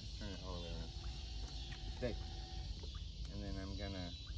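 Indistinct talking, with a steady hum lasting about two seconds in the middle.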